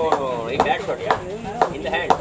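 Men's voices calling out on a cricket field, with short, sharp clicks or knocks at uneven intervals several times over.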